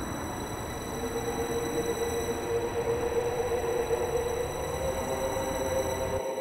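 Trolleybus running, its electric drive giving a steady whine over an even rumble of road and body noise.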